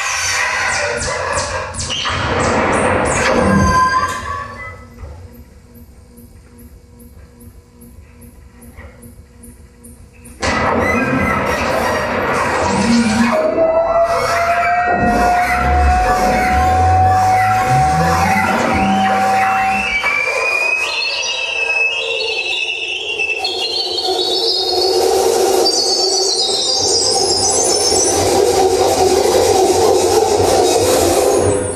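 Live experimental noise music from tabletop electronics and mixers: dense, harsh textures that drop about four seconds in to a quieter stretch of fast, even clicks, then cut back in loud about ten seconds in. A held tone then slowly rises, followed by high tones gliding upward over a noisy drone.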